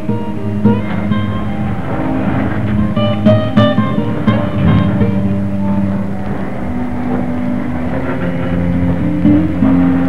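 Instrumental soundtrack music led by guitar, with held low notes and plucked higher notes.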